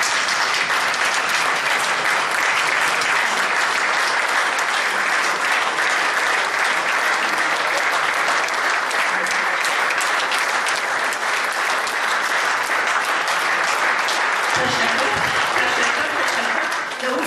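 An audience in a hall applauding in one long, steady, unbroken round of clapping.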